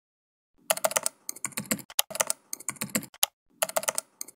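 Computer keyboard typing: rapid runs of key clicks in short bursts with brief pauses between them, starting about half a second in.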